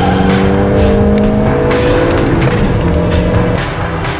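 A car engine pulling under acceleration, its note rising slowly over the first couple of seconds, with background music underneath. The engine note fades away near the end.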